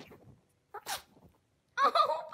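A small dog sneezing once, a short sharp sneeze about a second in. A voice starts just before the end.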